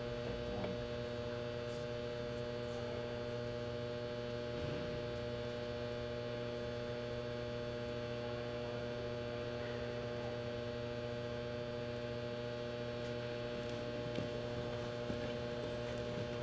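Steady electrical mains hum, several steady tones layered together and unchanging throughout.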